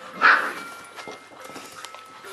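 A seven-week-old Saint Bernard puppy gives one short, rough bark about a quarter of a second in.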